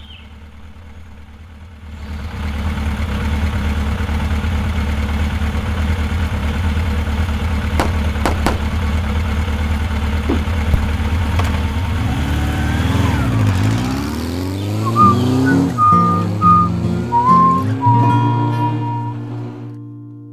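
Sport motorcycle engine running, loud and steady from about two seconds in, its pitch sweeping up and down about two-thirds of the way through as it pulls away. Music with sustained notes comes in over the last few seconds.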